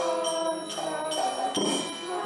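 Devotional kirtan music: a held, stepping melody of chanted or played notes, with bright ringing strikes of small hand cymbals (kartals) about every half second.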